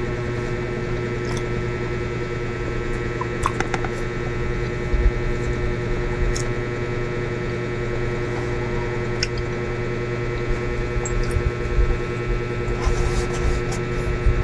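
A steady hum of several fixed tones throughout, with soft chewing of a sticky rice cake and a few faint clicks.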